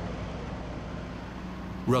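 Box truck's engine running, a steady low rumble.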